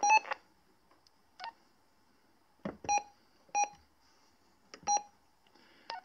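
Short electronic key beeps from a two-way radio as its buttons are pressed, about five in all, spaced irregularly: the first right at the start, a faint one after about a second and a half, then three close together, the last near five seconds. Several beeps come just after a sharp button click.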